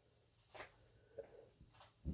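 Near silence: room tone, with a few faint soft ticks.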